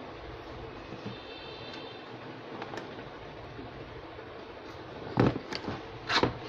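Hard plastic tool case handled on a wooden tabletop: a steady hiss, then two sharp knocks of the case near the end as it is tipped up.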